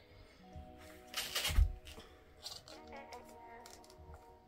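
Background music with held notes. About a second in, a brief plastic scrape ending in a low thump as the top is fitted onto a plastic Air Up water bottle.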